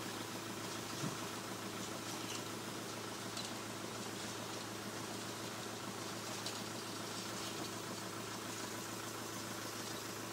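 Van engine idling steadily, a constant hum, with a few faint ticks.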